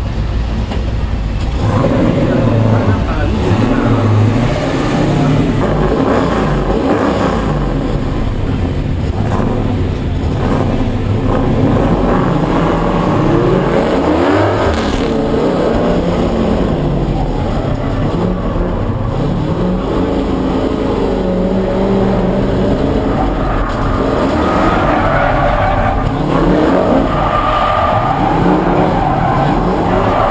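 Chevrolet Camaro IROC's 383 V8 driven hard, its revs rising and falling over and over as it accelerates and lifts, heard from inside the cabin.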